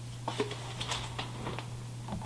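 Faint, scattered light clicks and rustles of a cardboard drinking-chocolate package being lifted from a box and handled, over a steady low hum.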